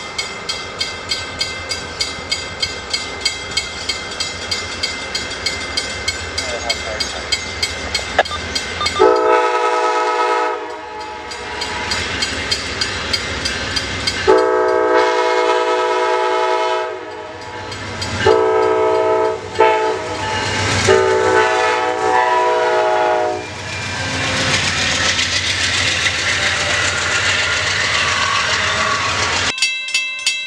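Amtrak GE Genesis diesel-electric locomotive sounding its multi-note air horn in five blasts: two long ones, two shorter ones close together, then a final long one. After the horn comes the loud rush and rumble of the train running past.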